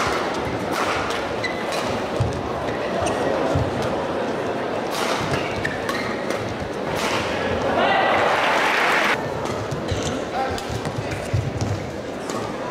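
Badminton doubles rally in an arena: repeated sharp cracks of rackets hitting the shuttlecock over a steady crowd murmur. About eight seconds in, the crowd noise surges into cheering for about a second and then cuts off suddenly.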